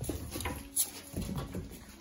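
Cavapoo puppies scuffling about on a wooden floor, with the patter of paws and a few short, sharp clicks.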